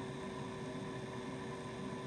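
Steady background hum and hiss with a few faint steady tones, unchanging throughout.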